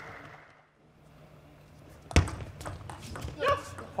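Table tennis ball knocking sharply once about two seconds in, then a run of lighter taps as it is bounced between points, with a short voice call near the end.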